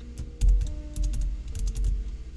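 Typing on a computer keyboard: a run of irregular, quick keystrokes.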